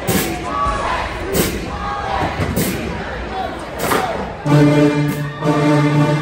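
A crowd shouting and singing in the stands, with a few loud thumps spaced about a second apart; about four and a half seconds in, a band's brass section comes in with loud, sustained chords.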